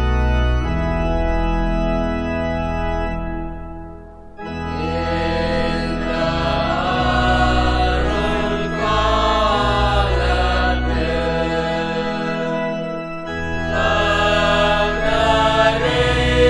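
Organ playing sustained chords, breaking off briefly about four seconds in. Voices then sing a Tamil hymn with the organ accompanying.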